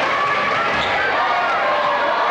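A basketball being dribbled on a hardwood gym floor, heard over the steady noise of a crowd and voices calling out in the gym.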